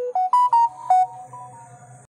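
A short electronic chime melody of about five quick notes, stepping up and then back down, with softer notes ringing on for the second half before it cuts off.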